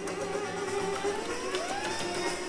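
String quartet and prepared piano playing a dense, sustained passage, with a string line sliding upward in pitch about a second and a half in.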